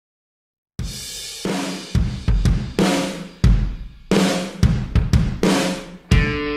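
Background music opening with a rock drum-kit intro: bass drum, snare and crashing cymbals hit in an uneven pattern. It starts about a second in, after silence.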